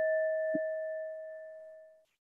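Electronic chime of a countdown timer app ringing out: one bell-like tone fading steadily, cut off abruptly near the end. A faint knock about half a second in.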